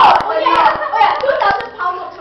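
Girls' voices talking over one another at close range, with a few irregular sharp clicks or claps among them.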